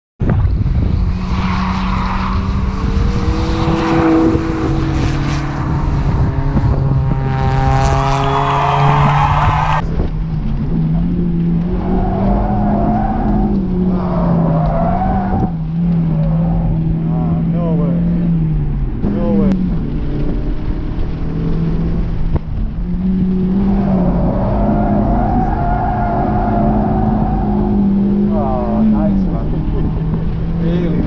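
Mazda MX-5 NC's four-cylinder engine running hard, its note stepping up and down, with tyres squealing at intervals as the car slides through corners.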